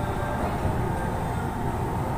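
A steady low rumbling noise with a faint, even hum above it, unchanging throughout.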